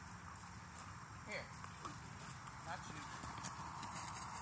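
Rottweiler puppies playing, faint scuffling with a few short high yelps or whimpers.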